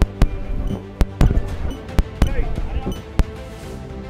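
Camera shutters clicking irregularly, about eight sharp clicks in four seconds, over background music and voices.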